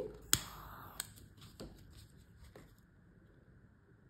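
Handling of a paper mixing cup: one sharp click about a third of a second in, a second click near the one-second mark, then two fainter clicks with a soft crinkle, as the cup is pinched into a pouring spout.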